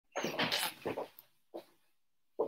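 A few short rustling bursts as a person moves right up against the microphone, clothing brushing and shifting close by.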